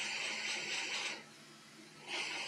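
Hot air rework station blowing a steady hiss of air onto a laptop's CPU heatsink to heat it until the cooling fan speeds up. The hiss stops a little over a second in and starts again at the end.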